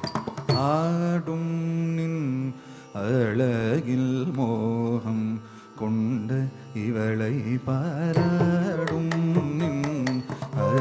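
Carnatic classical music: a singer holds long notes that slide and waver with ornaments, over a steady drone, in phrases with brief pauses. A few sharp clicks come in near the end.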